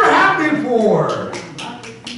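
A man's preaching voice in the first half, then several sharp taps in the second half as the voice fades.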